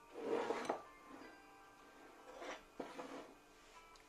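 Ceramic dishes being handled and set down on a wooden countertop: a brief clatter near the start, then a few lighter knocks and a sharp click about two and a half to three seconds in. Soft background music plays underneath.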